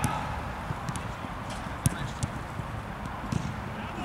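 Scattered thuds of a football being kicked and players' footfalls on artificial turf, the sharpest just under two seconds in, over a low steady rumble.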